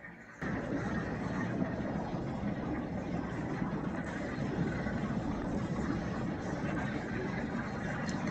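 A steady low rumble of background noise, like an engine running, that starts suddenly about half a second in and holds an even level.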